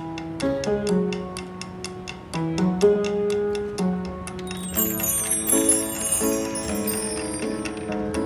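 Instrumental intro on an upright street piano, held chords changing every second or so, over a steady ticking beat of about four clicks a second. From about halfway in, high chiming electronic notes from a Tenori-on join in.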